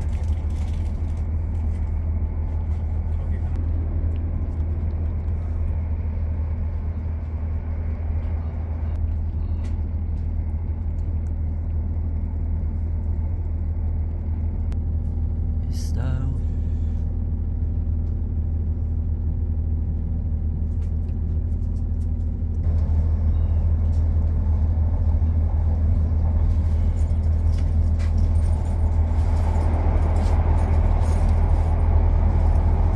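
Inside a Class 170 Turbostar diesel multiple unit: the steady low rumble of the underfloor diesel engines and wheels on the track. Midway it drops to a quieter, steady hum as the train stands at a station, then grows louder again as the train pulls away.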